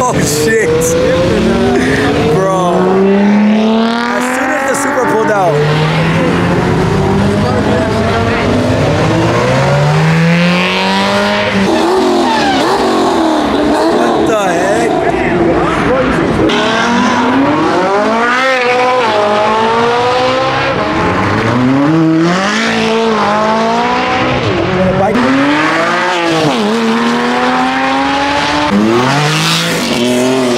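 Several performance cars accelerating hard past, one after another. Each engine's note rises in pitch and drops back at every gear change.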